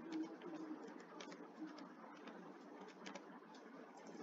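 Faint computer keyboard typing: scattered short key clicks. A low bird call sounds in the background near the start and again about a second and a half in.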